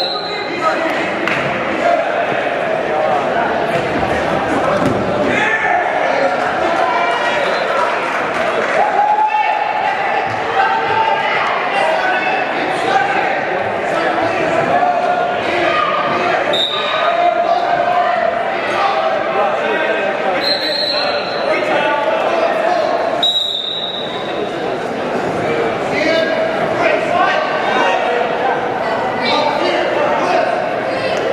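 Crowd at a wrestling tournament in a large echoing gym: many overlapping voices talking and shouting, with scattered thuds and a few short, high whistle-like tones in the second half.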